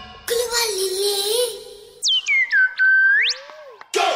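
A brief musical passage with a wavering held note, then whistle-like electronic sound effects: several quick falling chirps that settle onto one steady tone and slide back up, and a short low glide near the end.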